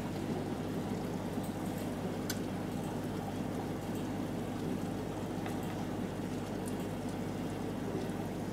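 Aquarium water bubbling and trickling steadily at the surface, with a low hum underneath and a few faint pops.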